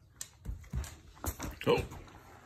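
A sable German shepherd puppy mauling a plush unicorn toy: a quick series of thumps and scuffles as she grabs and shakes it.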